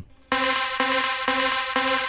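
Synth loop playing through Ableton Live's Ping Pong Delay: a sustained electronic chord pulsing about four times a second, starting about a third of a second in. The delay echoes are set a little ahead of and behind the beat by the delay's offset control.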